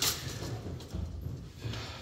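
Folding metal lattice gate of an old cage elevator being pulled shut by hand: a sharp metallic click as it latches right at the start, then low rattling and handling noise.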